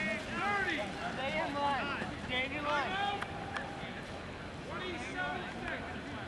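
Several high children's voices calling and chattering over one another, too indistinct to make out words. They are busiest for the first three seconds or so, then thin out and fade near the end.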